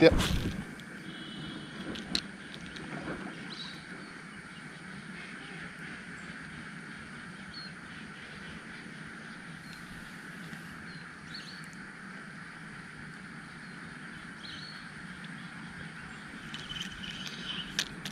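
Quiet outdoor ambience with a steady faint drone and a few soft clicks, after a sharp knock at the very start.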